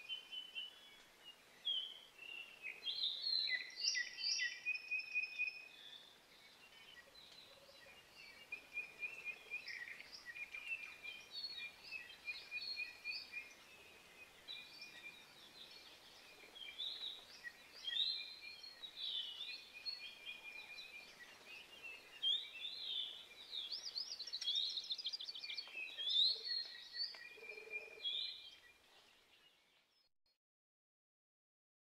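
Birdsong: several birds chirping and trilling over one another above a faint steady hiss, fading out near the end.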